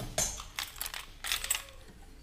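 Crinkling rustle and irregular clicks of reflective bubble-foil insulation being brushed and handled close to the microphone, in three or four bursts.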